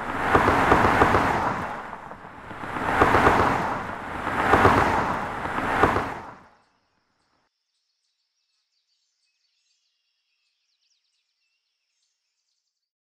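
Loud rushing, rumbling noise of passing road traffic, a sound effect, swelling and fading three times, then cutting off abruptly about six and a half seconds in.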